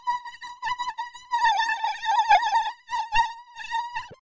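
A buzzy electronic tone pitched near 1 kHz, broken up into a stuttering, choppy pattern, as made by digital audio effects.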